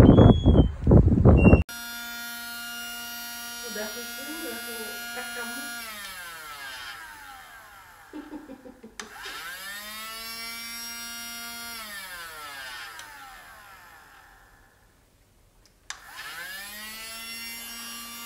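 A toy stick vacuum cleaner's small motor whining steadily, switched off and on again. Its pitch sinks as it winds down and climbs as it starts up, in three runs. A loud, rough burst of outdoor noise at the very start cuts off abruptly.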